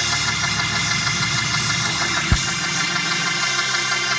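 Church keyboard holding a steady, sustained organ-style chord with a low bass drone, and a single bass drum hit a little over two seconds in.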